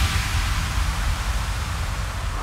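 Synthesized white-noise wash in a hardstyle track's breakdown: a steady hiss over a low rumble, with no beat.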